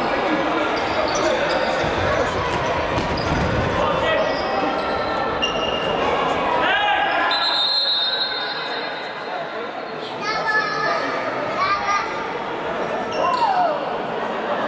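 Futsal ball being kicked and thudding on the hard sports-hall floor amid players' and spectators' shouts, all echoing in the large hall. A high, steady whistle blast sounds about halfway through, after which the ball sounds die away and only scattered calls remain.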